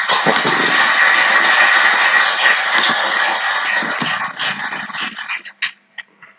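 Audience applauding, a dense wash of clapping that dies away about five seconds in to a few scattered claps.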